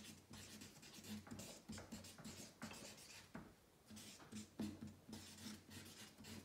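Felt-tip marker writing on flip-chart paper: faint, short irregular strokes, with a brief pause partway through.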